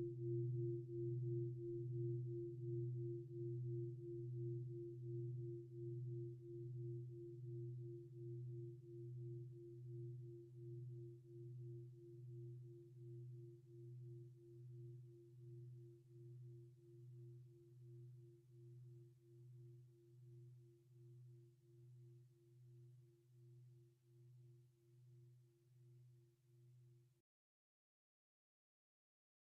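The long ring of a struck meditation gong dying away, marking the end of the sitting. A low hum with a clear higher tone above it pulses about three times every two seconds as it slowly fades, then cuts off suddenly near the end.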